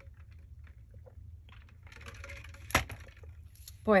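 A person taking a drink: faint sips and swallows, then one sharp knock near the end as the drink is set down on the table, over a steady low room hum.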